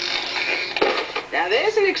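Cartoon sound effects: a clattering crash with a sharp thud a little under a second in, as the gorilla tumbles to the ground. A character's voice follows in the second half.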